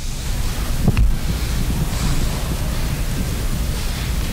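Microphone handling noise as a hand-held microphone is passed to the next questioner: a steady rustling rumble, with a short knock about a second in.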